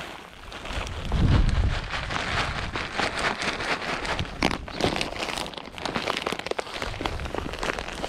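A plastic bag of bird seed crinkling and rustling as it is handled, with many small irregular ticks and a brief low rumble about a second in.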